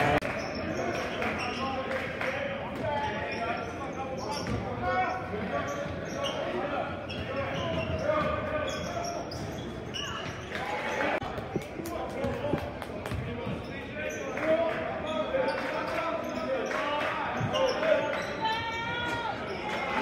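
Basketball bouncing on a hardwood gym floor, with repeated short knocks throughout, under indistinct shouting voices from players and onlookers in a large gym.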